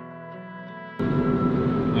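Background music with steady held notes for about a second, then a sudden cut to a loud, steady noise with a constant hum.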